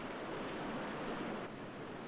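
Sea surf: waves breaking and washing over rocks, a steady rushing that swells slightly about a second in.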